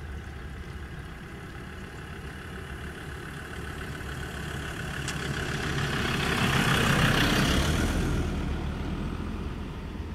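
Road traffic: a steady low engine rumble, with a vehicle passing close by that swells to its loudest about seven seconds in and then fades.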